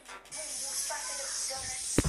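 A pulsing music beat cuts off just after the start, and a steady high hiss takes over. Near the end come low thumps and one sharp knock, the sound of the phone being handled as it swings away.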